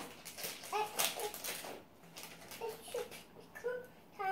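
A small child's short, high-pitched murmurs and hums, without words, over the rustle of cardboard and plastic parts bags being handled.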